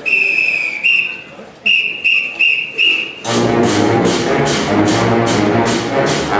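A whistle count-off, one long blast and then five short ones, followed about three seconds in by a high-school pep band coming in loud with brass and drums, the beat hitting about twice a second.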